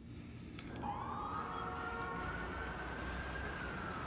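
A single siren wail over a steady low city rumble: one long tone that comes in about a second in, rises, then falls slowly.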